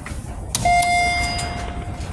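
A click, then a single elevator chime: one ding from a Mongrain hydraulic elevator's hall signal that rings out for about a second and fades, as the car answers the up call and its doors are about to open.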